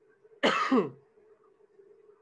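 A man gives one short cough, clearing his throat, about half a second in; it drops in pitch as it ends.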